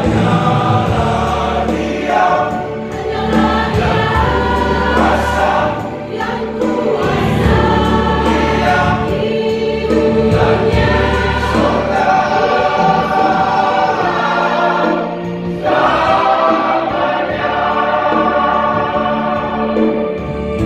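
Church choir singing in harmony over a steady low accompaniment, in long sustained phrases with short breaks between them.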